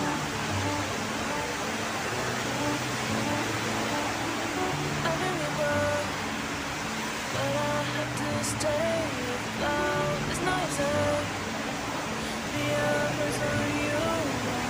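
Steady hiss of heavy rain, noisy enough for the walker to remark on it, with background music (a bass line and a melody) laid over it.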